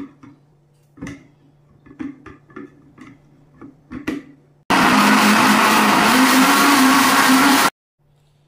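A plastic blender jar knocked and clicked into place on its base, then a Sharp countertop blender runs loudly for about three seconds, churning a thin liquid batter with a steady motor pitch, and cuts off suddenly.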